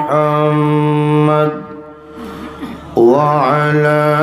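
A man's voice chanting in long, drawn-out melodic notes. About a second and a half in he breaks off to breathe, then comes back in about halfway through on a note that slides up and down.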